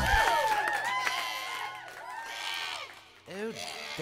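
A group of children's voices shouting and cheering as the backing music stops, dying away over about three seconds; a man's voice comes in near the end.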